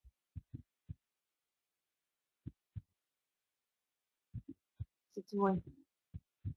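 Several faint, short low thumps at uneven intervals, then a brief burst of a woman's voice near the end.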